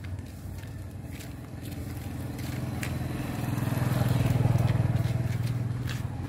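A motor vehicle's engine running steadily, growing louder to a peak a little past the middle and then easing off, as if it passes close by.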